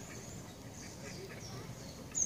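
Faint bird calls, a few short ones, over a low rumble of wind on the microphone.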